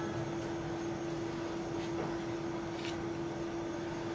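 Steady background hum with one constant low tone, over which a silicone pastry brush dabbing egg wash onto soft dough gives a few faint, soft touches.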